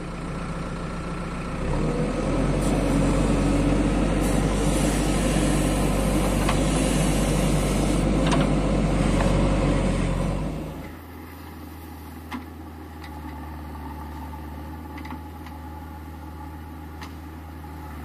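Diesel engine of a JCB backhoe loader working close by, loud, with a few sharp clanks. About eleven seconds in, the sound drops to a quieter, steady engine hum from the machines farther off.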